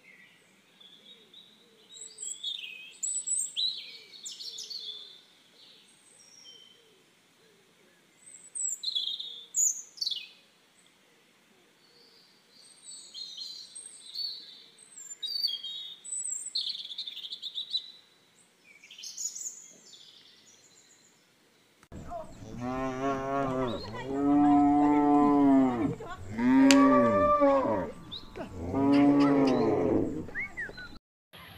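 Small birds chirping in short scattered calls, then several cows mooing one after another in loud, long calls that rise and fall in pitch.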